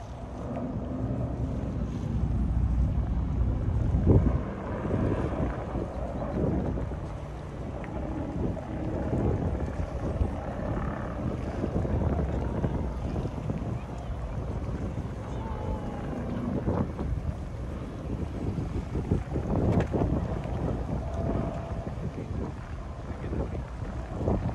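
Wind buffeting the microphone in uneven gusts, a low rumble that swells and eases, with faint voices of people mixed in.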